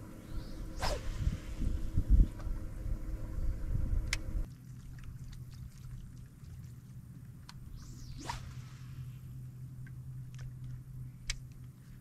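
Two fishing casts: a rod swishing and line whizzing off the reel, about a second in and again near 8 s. For the first few seconds there is a low rumble of wind on the microphone; after that a low steady hum and a few light clicks.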